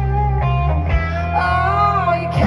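Live country band music played loud through a festival PA, with guitar to the fore over bass and drums, in a passage between sung lines.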